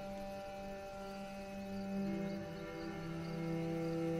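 Soft, sustained background score: held chords with no beat, moving to a new, lower-and-higher chord about two seconds in.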